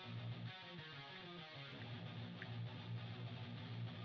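Faint background music, a guitar piece, playing quietly under the narration.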